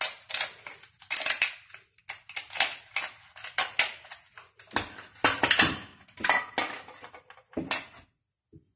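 Thin aluminium foil baking cups being handled, crinkling and rattling in quick irregular bursts several times a second, with a few louder, fuller crackles about five to six seconds in.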